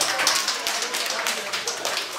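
Audience applauding, a dense patter of clapping with a few voices under it.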